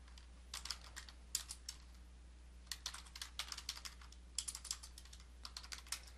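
Typing on a computer keyboard: faint, quick key clicks in about five short runs with brief pauses between them.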